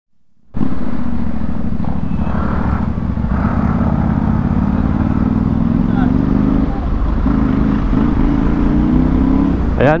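FKM Slick 400's 400cc single-cylinder, liquid-cooled, CVT-driven engine running as the scooter pulls away and gathers speed: a steady low drone that begins about half a second in, climbs slightly in pitch, dips briefly about seven seconds in, then picks up again.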